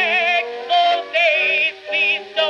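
A 1922 Okeh 78 rpm record of a contralto with orchestra playing on a turntable, with the narrow, thin sound of an acoustic-era recording. A held melody line wavers with strong vibrato and is broken by a few short pauses.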